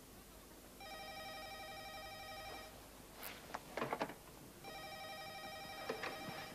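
Telephone ringing: two long rings, each about two seconds, starting about a second in and again near the end, with a short faint sound in the gap between them.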